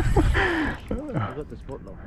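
A man's voice exclaiming without clear words, over a low rumble that drops away well before the middle of the stretch.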